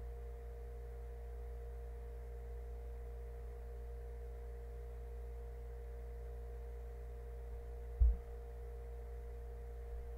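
Steady electrical mains hum, a low drone with a few faint steady higher tones, and a single dull low thump about eight seconds in.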